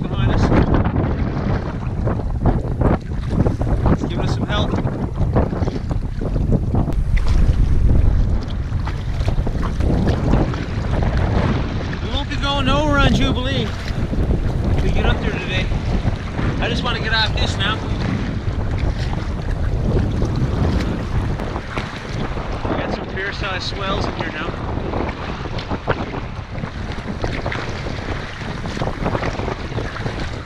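Strong wind buffeting the microphone, with choppy lake water splashing against an inflatable kayak as it is paddled.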